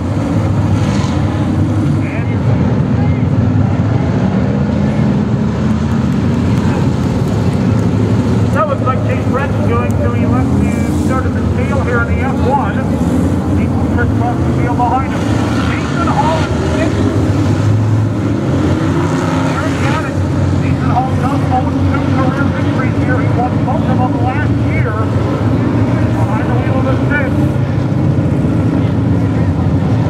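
Engines of a pack of dirt-track modified race cars running steadily at low speed as the field circles together, with voices heard over them.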